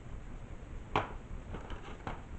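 Handling noise from a monitor's circuit board being moved about on a table: one sharp knock about a second in, then a few faint clicks.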